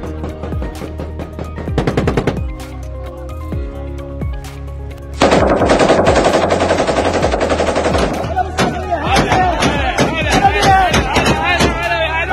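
Automatic gunfire: a short rapid burst about a second in, then a long, loud stretch of rapid fire from about five seconds in that carries on, more broken up, to the end.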